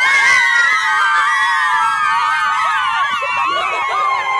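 A huddle of girls screaming together in overlapping, high, drawn-out shrieks.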